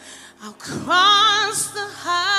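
Gospel singing: after a brief break, a woman's voice comes in about a second in and holds one long note with vibrato over sustained backing chords.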